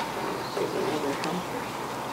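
A low buzz that wavers in pitch, like a flying insect, over steady room hiss.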